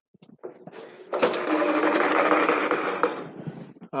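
Pull-down projector screen rolling up onto its spring roller: a steady mechanical whir that starts about a second in, runs for about two seconds and fades out near the end.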